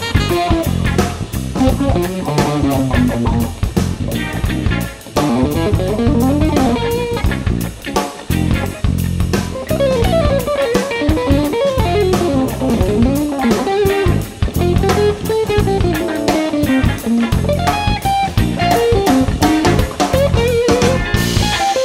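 Instrumental psychedelic funk-rock band recording: an electric guitar plays a lead line that bends and glides in pitch over electric bass and a drum kit.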